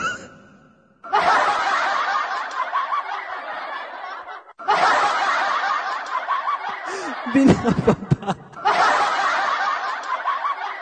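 Laughter in three bursts of about four seconds each, every burst cutting in and stopping abruptly. A man laughs along during the second burst.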